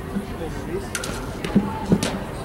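Indistinct voices of players and spectators chattering in the background, with two sharp knocks, about one second in and near the end.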